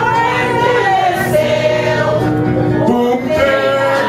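A group of men and women singing together to an acoustic guitar, the voices holding long notes.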